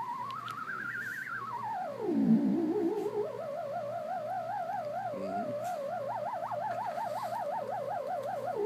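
Homemade theremin built from digital hex inverters, giving a square-wave tone through small speakers as a hand moves near its soda-can antenna. The pitch rises, swoops down low about two seconds in, climbs back and holds with a wobbling vibrato that grows wider near the end.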